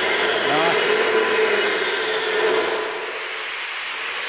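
Steady mechanical whirring with a constant hum from running machinery, dropping a little in level about three seconds in.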